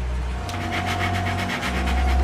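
A plastic card scraping and chopping powder on a wooden tabletop in quick short strokes, about nine a second, over a low steady drone.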